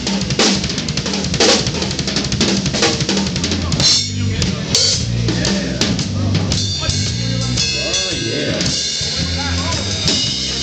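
Live drum kit and electric bass playing together: steady drum strikes over held bass notes that change pitch every half second or so.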